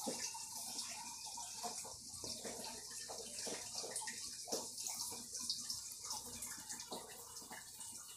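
Water running into an indoor pond from a small waterfall and filter return: a steady splashing hiss with many small irregular gurgles.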